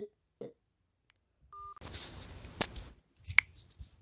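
A short electronic phone tone from a speakerphone call, then a few seconds of crackling, rustling noise with a sharp click in the middle, as the call ends.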